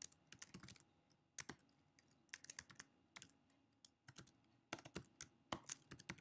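Faint keystrokes on a computer keyboard: irregular clicks in short runs with brief pauses between them, as code is typed.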